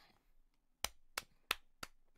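A person clapping four times, sharp separate claps about three a second.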